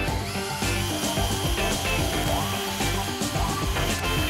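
Power drill with a paddle mixer running steadily in a plastic cup, stirring clear resin and stone powder together, with background music over it.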